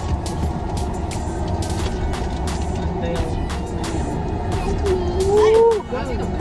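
Aluminium foil crinkling and crackling again and again as a foil-wrapped turkey leg is handled, over the steady low rumble of an idling car. Near the end, a drawn-out vocal sound that rises and falls is the loudest thing.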